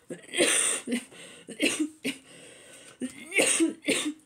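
A woman coughing four times into her fist, with the loudest coughs about half a second in and again a little after three seconds.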